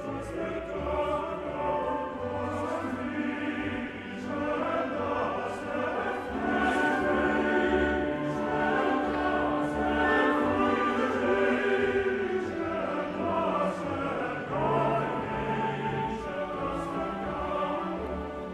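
Male chorus singing with a full orchestra in a Romantic choral cantata; the sound swells louder in the middle, then eases off.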